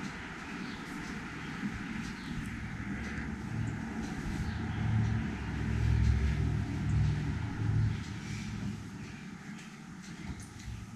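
Soft rustling and low rumbling as a large chunky loop-yarn blanket is handled, unfolded and spread over a chair, loudest in the middle and easing off near the end.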